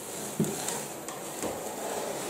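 A large cardboard LEGO set box being handled and shifted across a wooden tabletop: dull rustling and scuffing of cardboard, with a few soft knocks as it is moved and set down.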